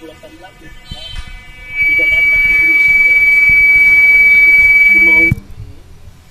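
Audio feedback: a loud, steady high-pitched whistle that starts suddenly about two seconds in and cuts off abruptly after about three and a half seconds, over a faint phone caller's voice.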